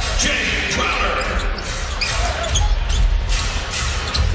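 A basketball being dribbled on a hardwood court, knocking at irregular intervals over the steady noise of an arena crowd.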